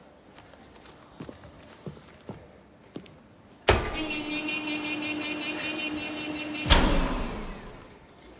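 Stage prop washing machine set going: a loud buzzing mechanical hum with a steady low tone starts suddenly about three and a half seconds in, runs for about three seconds and stops with a loud bang that rings out briefly. Before it, a few light clicks and knocks.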